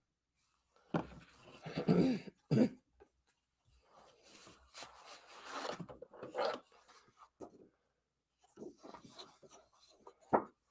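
A woman coughs and clears her throat in a few loud bursts, followed by quieter rustling of paper as a sheet of patterned cardstock is picked up and handled.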